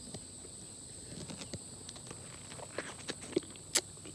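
Someone biting into and chewing a soft, ripe peach: faint wet mouth sounds and small clicks, with two sharp clicks near the end. A steady high insect trill goes on behind.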